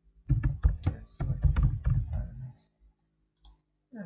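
Computer keyboard typing: a quick run of keystrokes lasting about two seconds, followed by a couple of single clicks near the end.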